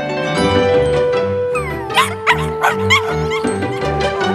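Background music with a pulsing bass line, over which a cartoon dog gives a falling whine and then a few short yips about two to three seconds in.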